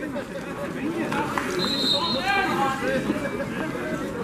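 Spectators chattering, several voices talking at once, with a brief high steady tone about halfway through.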